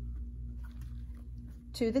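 Faint, soft rustles and light taps of cotton quilt pieces being handled and laid on a padded ironing board, over a steady low hum. A woman's voice starts near the end.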